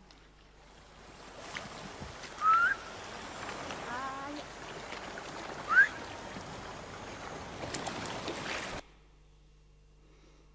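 Ama divers' isobue breathing whistle: two short, loud rising whistles, about two and a half and six seconds in, over a steady wash of sea water. It is the sharp whistled exhale a free diver makes on surfacing, which protects the lungs. The sound cuts off suddenly near the end.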